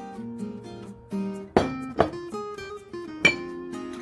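Background acoustic guitar music with held, plucked notes, broken by three sharp clinks of a metal spoon against dishes, about one and a half, two and three and a quarter seconds in.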